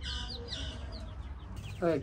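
A chicken chick peeping: a quick run of short, high peeps, each falling in pitch, through the first second or so.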